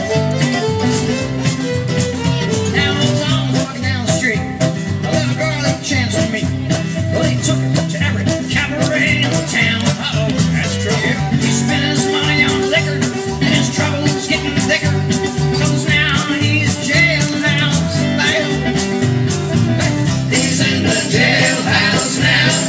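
Acoustic jug band playing an instrumental break: fiddle and resonator guitar taking the melody over strummed guitars and upright bass, with a steady beat.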